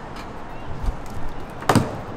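A plastic push-in body clip popping out of a car's rear bumper cover, heard as one sharp click near the end, with a faint low thud about halfway through.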